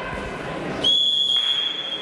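Wrestling referee's whistle: a single long, steady, shrill blast starting about a second in, calling the bout to a stop while one wrestler holds the other down on the mat.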